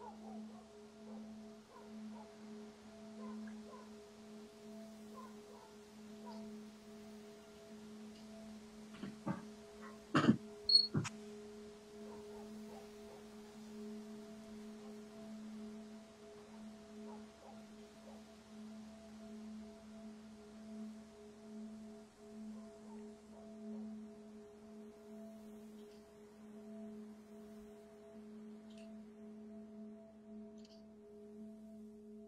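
A quiet, steady low droning tone with two fainter higher overtones held throughout. About nine to eleven seconds in, a few sharp knocks stand out as the loudest sounds.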